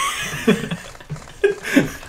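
Men laughing: a few short bursts of chuckling.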